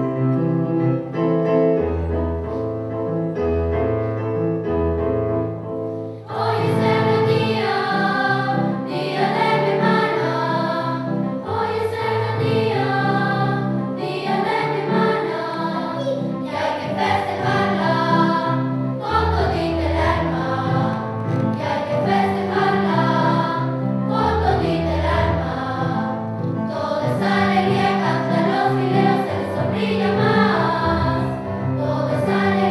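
Children's choir singing with piano accompaniment. The piano plays alone for about the first six seconds before the voices come in.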